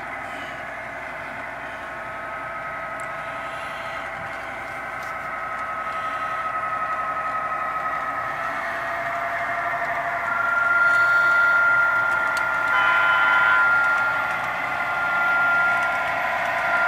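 A model SD80MAC diesel locomotive running along the layout track, a steady droning engine sound that grows louder as the train approaches. A brief chord of higher tones sounds about thirteen seconds in.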